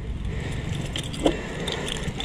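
Keys jangling and clicking as a key is worked in the lock of a Sanya R1000 moped, with one sharper click a little over a second in.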